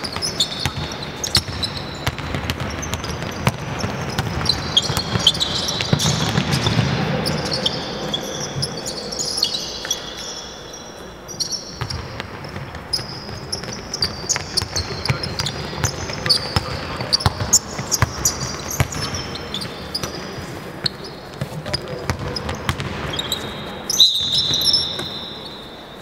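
Basketballs bouncing on a hardwood gym floor in a run of sharp knocks, with many short high sneaker squeaks as players cut and stop, and players' voices calling out.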